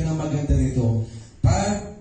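Only speech: a man talking into a handheld microphone, with a brief pause about two-thirds of the way through.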